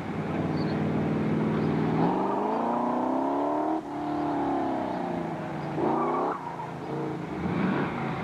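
Sports car engine on a hard autocross run. About two seconds in the revs jump and climb, then drop suddenly just before the middle, as with a lift or a gear change. The engine then winds down and gives a short burst of revs about six seconds in.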